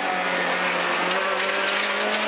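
Renault Clio R3 rally car's four-cylinder engine heard from inside the cockpit, running loud at a held, high note that dips slightly and picks back up about a second in, over a constant rush of tyre and road noise.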